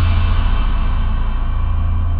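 Live rock band holding one loud chord on acoustic and electric guitars, bass guitar and drum kit, with cymbals ringing. It is struck just before and then fades only slowly, the held chord of the song's ending.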